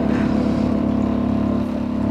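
Semi-automatic double-nozzle liquid filling machine (MKS-LT130II) running its pump with a steady hum while it dispenses liquid through both nozzles into two bottles.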